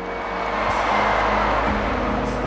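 A large stadium crowd cheering and clapping, swelling to a peak about halfway through, over a music soundtrack with sustained notes.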